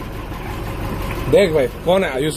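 Bus engine idling, a steady low rumble heard from inside the cabin, with a man's raised voice cutting in about one and a half seconds in.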